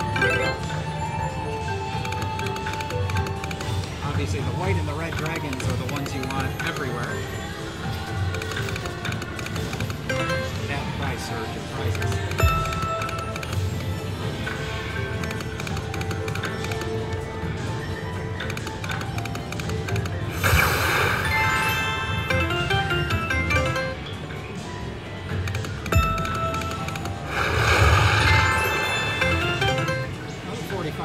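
River Dragons Sapphire slot machine playing its game music and reel-spin chimes throughout, with two louder bursts of sound, one about two-thirds through and one near the end as a win pays out.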